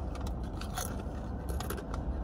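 Someone chewing a mouthful of sour cream and chive crisps: a few faint crunches over a steady low hum.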